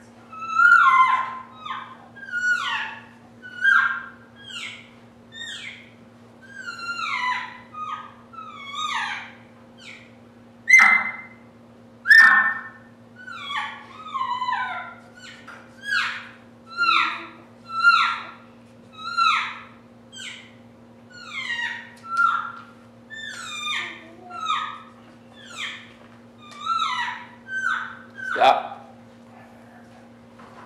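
Cow elk sounds blown on a reed elk call: a run of short mews, about one a second, each falling in pitch, with two louder ones about eleven and twelve seconds in. A steady low hum runs under them.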